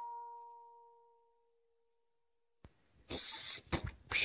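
The last mallet-like notes of the credits music ring out and fade over the first second or so, then near silence. About three seconds in comes a short burst of hiss like TV static, followed by two brief crackles just before the end.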